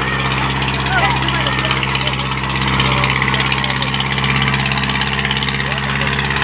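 Farmtrac 6055 tractor's diesel engine running steadily under load as it pulls two harrows through tilled soil, with voices of the onlookers mixed in.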